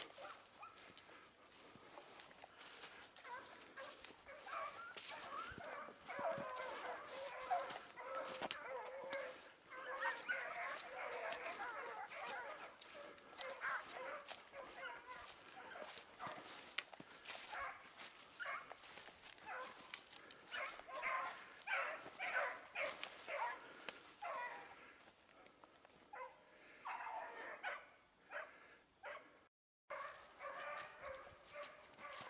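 A pack of dogs barking together in the woods, many voices overlapping. The barking is heaviest through the middle and thins to scattered barks near the end.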